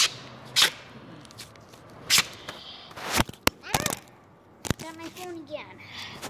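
Handling noises of a homemade tool and a roll of tape being worked by hand: a string of sharp snaps and knocks at uneven intervals, about seven in all, with a brief voice sound about five seconds in.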